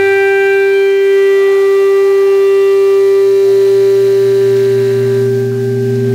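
Yamaha electronic keyboard holding one loud, steady drone with a bright, buzzing edge, unchanged in pitch throughout.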